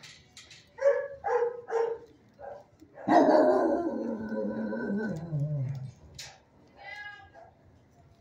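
Shelter dogs barking: three short barks about a second in, then a long drawn-out call that falls in pitch over about three seconds, and one more bark near the end.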